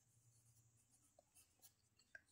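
Faint pencil scratching on a paper workbook page as a word is written, barely above near silence.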